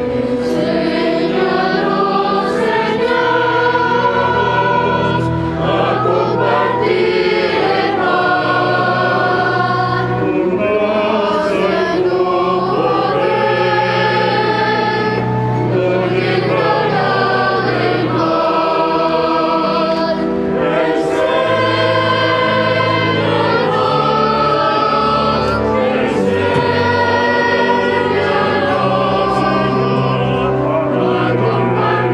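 A choir singing a hymn over instrumental accompaniment, with held bass notes that move in steps beneath the voices.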